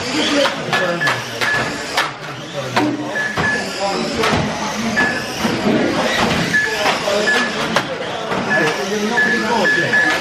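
Radio-controlled cars racing on an indoor carpet track: electric motors whining up and down and many sharp plastic clacks as the cars hit each other and the kerbs. Short high electronic beeps come every second or so, over a hubbub of voices in the hall.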